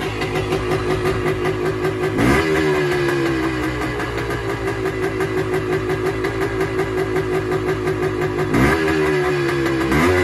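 1978 Yamaha DT250's two-stroke single-cylinder engine running at a high idle, revved twice, about two seconds in and near the end, each time the revs jumping up and then sinking slowly back. It idles high even with the choke off, a fault the owner has yet to trace.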